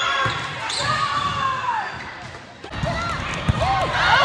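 Court sounds of a volleyball rally in a gym: sneakers squealing on the hard floor in several short and drawn-out squeaks that bend in pitch, over low thuds of feet and ball. The sound changes abruptly partway through.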